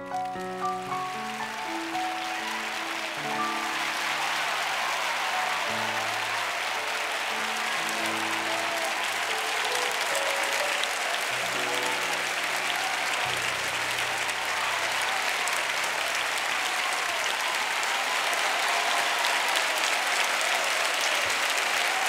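Studio audience applauding, the applause building from about a second in and running on steadily, over the last held chords of a Sauter grand piano fading out.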